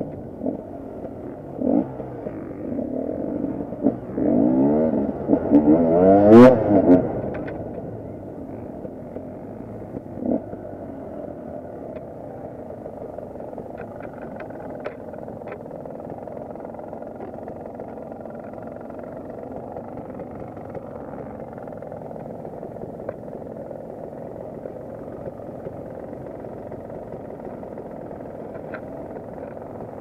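KTM 250 EXC two-stroke single-cylinder enduro motorcycle engine revved in a few short rising and falling blips during the first seven seconds, the loudest about six seconds in, then running steadily at idle for the rest.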